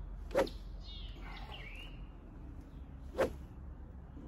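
Golf club swishing through the air on two practice swings, about three seconds apart: two short, sharp whooshes.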